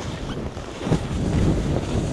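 Wind buffeting a camera's microphone during a downhill ski run, a steady low rushing that grows louder about a second in.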